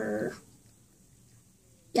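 A boy's brief hesitant vocal sound, a falling "uhh", followed by quiet room tone before he speaks again.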